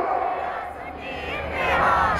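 A large crowd shouting a slogan back in answer to a leader's call. The mass of voices dips about a second in, then swells louder toward the end.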